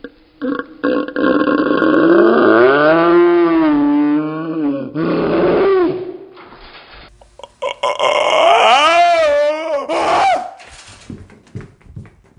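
A person's voice making two long, wavering moans, the pitch bending up and down throughout. The first lasts about five seconds, and the second starts about halfway through and lasts about three.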